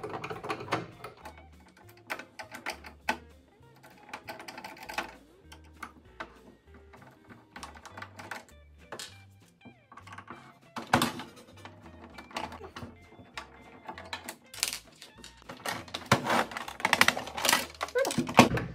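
Clicks and clattering of a screwdriver and the plastic housing of a Singer sewing machine being handled as a screw is taken out and the rear cover is worked loose, with louder clattering near the end.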